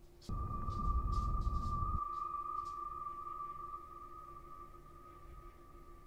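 Horror film soundtrack: a sudden low rumble that cuts off after under two seconds, with a single high-pitched ringing tone starting alongside it and held, slowly fading, for several seconds.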